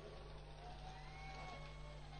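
Faint, steady low electrical hum, with a few faint tones rising and falling in pitch in the background.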